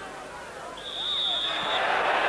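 A referee's whistle blows one steady high blast about a second in, stopping play for a foul that gives a free kick. Under it is the chatter of a stadium crowd, which swells near the end.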